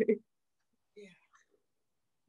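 A voice trailing off at the end of laughter, then a pause in the conversation with one faint, brief voice sound about a second in.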